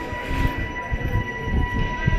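Busy pedestrian street ambience: a steady high-pitched tone, with a second, higher one, held throughout over an irregular low rumble.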